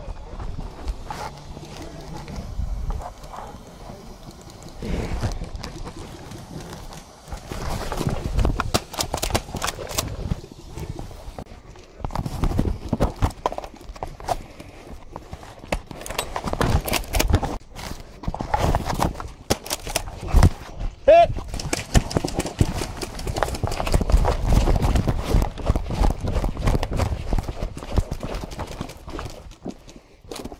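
Footsteps and kit noise picked up by a chest-mounted camera: irregular knocks, thuds and the rubbing of clothing against the microphone as the wearer moves.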